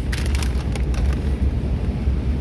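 Steady low rumble of background noise, with a few brief crinkles of a plastic frozen-food bag being handled near the start.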